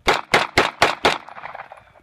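Five quick 9mm shots, about four a second, from a Beretta 92 pistol feeding from a Walther P99 ProMag 30-round extended magazine, with echo trailing off after the last shot.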